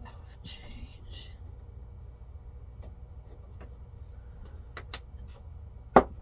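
Light handling of a pen and a palm-sized stone on a tabletop over a steady low hum: two faint clicks shortly before the end, then one sharp knock right at the end, the loudest sound.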